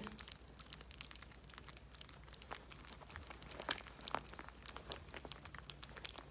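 Yorkshire terrier puppies lapping and smacking soft, runny pâté from a plate, their first weaning food: a faint, quick, irregular run of small wet clicks, with a couple of louder ones a little past the middle.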